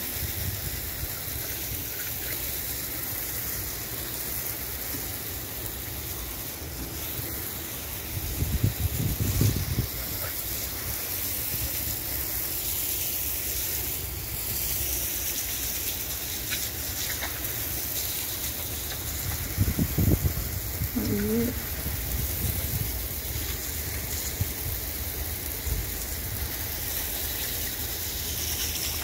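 Steady hiss of outdoor noise, broken by low rumbling bumps about eight and twenty seconds in, with a bird cooing briefly just after the second.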